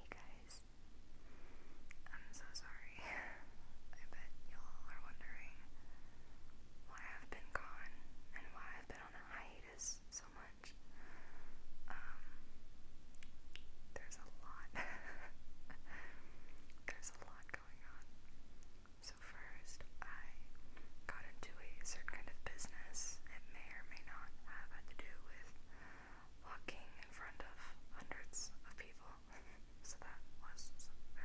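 A woman whispering: a steady stream of whispered talk, with sharp hissing s-sounds.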